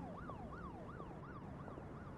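A faint siren sweeping up and down about three times a second, like an emergency vehicle's yelp siren.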